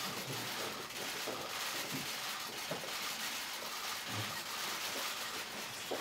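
A dense, steady barrage of many press camera shutters clicking rapidly during a handshake photo call, with faint murmuring underneath.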